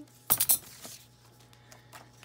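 Small metal scissors clicking: a quick cluster of three sharp metallic clicks about a third of a second in, followed by a fainter click.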